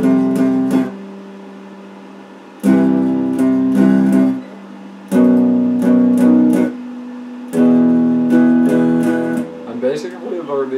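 Electric guitar strumming a chord progression built around E minor. It comes in four short phrases of several strokes each, with gaps of about a second between them, over a low steady hum.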